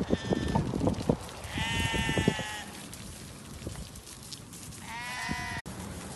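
Harri sheep bleating: a short bleat at the start, a long bleat lasting about a second from about a second and a half in, and another near the end that cuts off suddenly. A scatter of knocks and shuffling runs under the first half.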